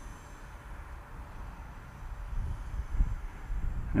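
Gusty wind buffeting the microphone with an uneven low rumble that swells near the end, over the faint, steady whir of a distant RC plane's electric motor and propeller as it climbs out.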